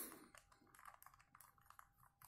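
Faint plastic clicks and rattles of a Rubik's Cube's layers being twisted by hand: a handful of small, irregular clicks.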